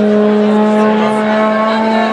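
A horn blown in one long, steady, unwavering note lasting about three seconds, over the chatter of a marching crowd.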